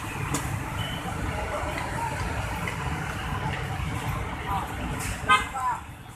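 Steady low rumble of heavy road traffic, with buses, cars and motorcycles moving along a busy multi-lane road. A brief, loud, high-pitched sound stands out near the end.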